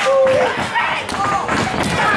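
Thuds of wrestlers' feet and bodies on a wrestling-ring mat, one at the start and another near the end, under spectators shouting.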